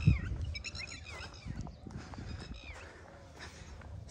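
Small birds chirping: a few short high calls near the start and a couple of falling calls about two seconds in, over a low rumble of wind or handling noise on the microphone.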